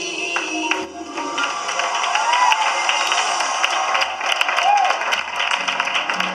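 The sung recorded music fades out in the first second, then an audience claps and cheers, with a couple of short voice whoops rising above the applause.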